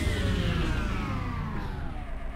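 Electronic dance music winding down in one long downward pitch glide, many tones falling together while the sound fades.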